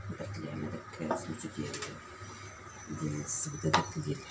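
A baking tray set down on a kitchen counter: a light knock about a second in and a sharp knock just before the end, with a voice talking quietly around it.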